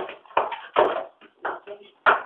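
A hammer striking the brick and tile of a tiled stove's firebox as it is broken apart: about five sharp knocks in quick, uneven succession.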